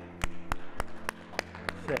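A man clapping his hands in an even rhythm, about seven sharp claps at a little over three a second.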